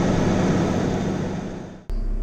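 JCB Fastrac tractor on the move, heard through a camera mounted outside the cab door glass: a steady rush of wind and running noise over a low diesel engine hum. It fades away near the end and breaks off suddenly.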